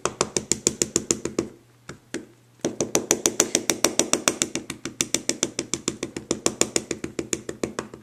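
An ink pad tapped rapidly and repeatedly against a stamp to ink it, about five or six light taps a second. The tapping stops briefly about a second and a half in, then resumes at the same pace.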